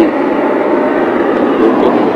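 Loud, steady rushing noise over a hidden body-worn camera's microphone, with muffled speech underneath.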